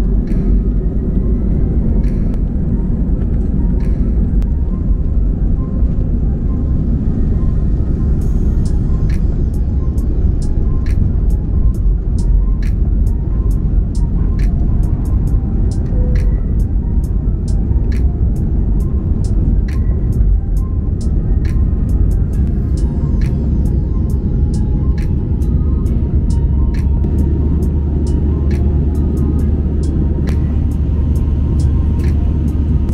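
Airbus A320 heard from inside the cabin during the takeoff run and climb: a loud, steady engine and airflow rumble. Background music with a regular beat is laid over it from about eight seconds in.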